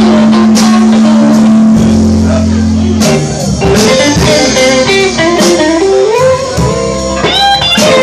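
Live blues band: an electric guitar plays lead lines with bent notes over electric bass and a drum kit, after a long held low note at the start.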